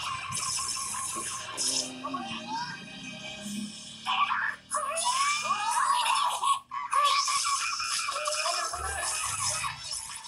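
Anime soundtrack from a TV broadcast: background music with character voices over it, dipping briefly twice.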